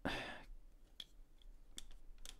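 Faint clicks and scraping of a Stanley knife cutting a plastic model part off its sprue, with one sharper click about a second in.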